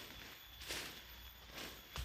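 Soil and dry leaves scraped and rustled by hand digging: two short scrapes about a second apart, then a sharp click near the end.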